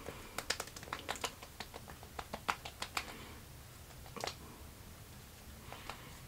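Hands patting toner into the skin of the face: a quick, irregular run of light, faint taps for about three seconds, then one more a second later.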